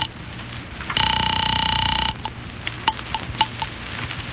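Telephone ringing on the line, a radio-drama sound effect: one ring about a second long starts about a second in and cuts off, followed by several light clicks as the receiver is picked up.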